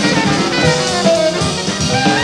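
Live jazz: a tenor saxophone solos in a quick run of notes over a drum kit.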